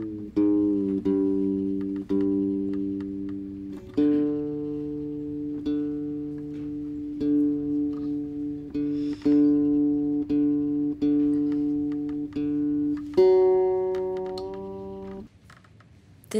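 Hollow-body electric guitar being retuned. The strings are plucked over and over and left ringing in pairs and chords while their pitch is adjusted. The ringing stops about a second before the end.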